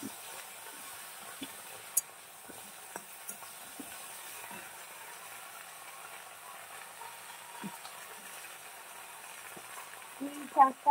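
Faint, steady sizzle of food frying in hot oil in a pan, with a few sharp utensil clicks, the loudest about two seconds in.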